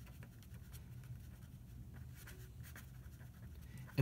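Purple Paper Mate felt-tip pen writing words on paper: faint, irregular scratchy strokes of handwriting.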